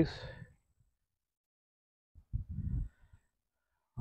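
Near silence, broken a little over two seconds in by one short breath of about half a second.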